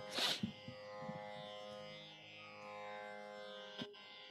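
A quiet, steady instrumental drone of held tones sounding under the pause before the singing. There is a short breathy hiss just after the start.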